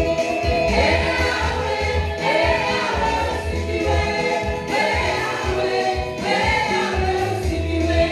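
Live gospel worship singing: a woman leads on a microphone with backing singers joining in, over amplified accompaniment with a steady low beat.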